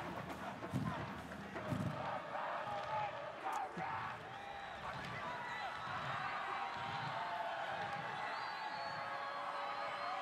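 Stadium crowd noise, with paddles banging against the wall at the field's edge in low thuds roughly once a second.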